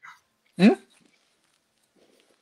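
A man's short questioning "hmm?", rising in pitch, in an otherwise near-silent pause of a video call.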